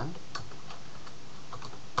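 A few separate keystrokes on a computer keyboard, unevenly spaced.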